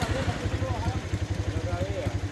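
Small motorized cart's engine idling with a steady, rapid putter, with voices faintly behind it.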